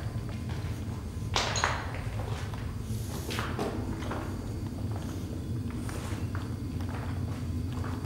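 Irregular footsteps scuffing and knocking over a rubble-strewn tunnel floor, a few scrapes and thuds, over a steady low hum.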